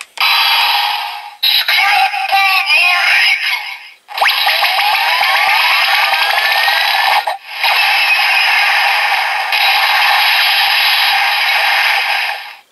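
Bandai DX Sclash Driver toy transformation belt playing its finisher sequence through its small built-in speaker: electronic music, sound effects and synthesized voice lines, set off by pulling its lever with the Dragon Sclash Jelly inserted. It runs in several sections with brief breaks, with rising whooshing tones from about four seconds in.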